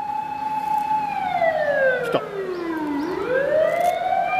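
Dog howling: one long note held, then sliding down in pitch for about two seconds and swinging back up near the end.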